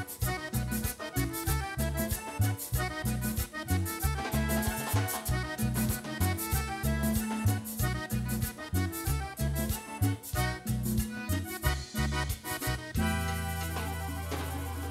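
Live accordion band music: a button accordion playing the melody over a pulsing electric bass line and an even, driving beat. About a second before the end the rhythm stops and the band holds one sustained closing chord.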